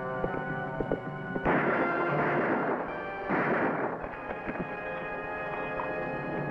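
Dramatic orchestral film score with brass, broken by two loud crashes with sharp starts, the first about a second and a half in and the second near the middle, each dying away over about a second.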